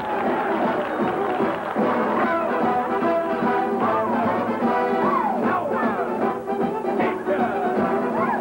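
Big-band dance music with the brass section in front, horns sliding up and down in pitch over a steady up-tempo beat.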